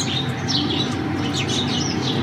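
Small birds chirping: many short, high chirps in quick succession, over a steady low hum.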